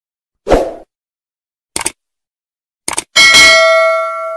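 Logo-intro sound effects: a thump about half a second in, two quick double clicks, then near the end a bright bell-like ding that rings out and fades.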